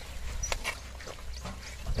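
Loaded bullock cart being pulled through mud by a pair of bullocks: a few sharp knocks and clatter from the cart and hooves over a low rumble, with a short call near the end.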